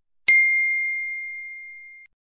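Notification-bell sound effect from a subscribe-button animation: one bright ding about a quarter of a second in, a single clear tone that rings and fades steadily, then cuts off suddenly.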